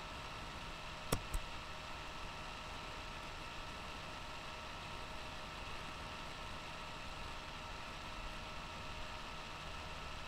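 Steady background hiss with a faint steady hum, and two sharp clicks close together just over a second in.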